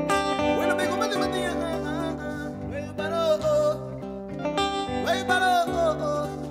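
Live Garifuna band music: acoustic and electric guitars over Garifuna hand drums, with a sung vocal line.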